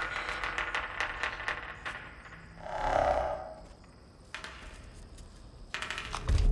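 Rapid clicking from the film's monster, with a short growl about three seconds in and more clicks near the end.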